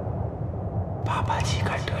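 A steady low rumble of trailer sound design, with a whispered voice coming in about a second in.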